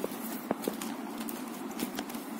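Plastic basket-weaving wire clicking and tapping as the strands are pulled and knotted by hand: a few sharp clicks, the loudest about half a second in, over a steady low hum.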